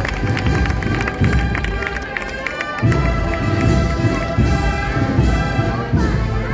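Processional band music with brass over a heavy drum beat, mixed with the chatter of a large street crowd.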